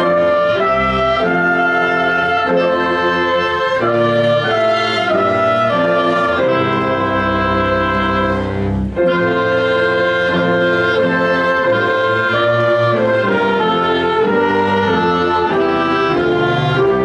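A small student ensemble with violin playing all the parts of a slow chordal piece together, held chords changing about once a second, with a brief break between phrases about nine seconds in.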